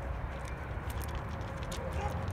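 Footsteps crunching on railway ballast gravel, a scatter of irregular scrunches over a steady low rumble.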